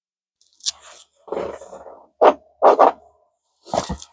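Mouth sounds of a man puffing on a briar tobacco pipe: a soft draw, then several short, sharp smacks and pops at the stem, the two loudest just past the middle.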